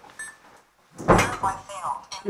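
A door knocks shut about a second in, a heavy thud, followed by people's voices.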